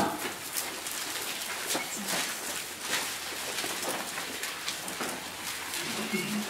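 Bible pages being turned and rustling, several short rustles and clicks over a steady room hiss.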